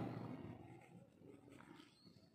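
Very quiet room tone, with faint scratching of a ballpoint pen writing on notebook paper.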